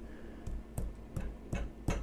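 About five light, sharp clicks and taps at irregular spacing, over a low steady hum.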